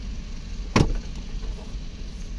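A single sharp plastic snap about a second in: a retaining clip of the centre-console trim panel on a Toyota Camry popping loose as the panel is pulled off by hand. A steady low hum runs underneath.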